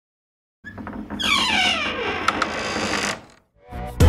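Sound effect of an animated logo intro: a sweeping effect lasting about two and a half seconds, made of several falling tones and a few clicks. Music with a beat starts just before the end.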